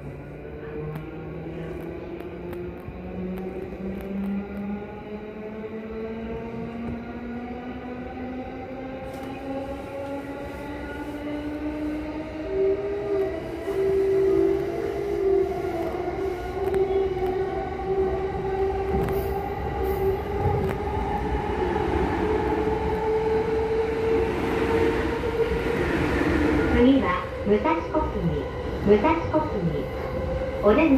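Electric commuter train in motion, heard from inside the carriage: the traction motors' whine rises steadily in pitch as the train gathers speed, over a low rolling rumble.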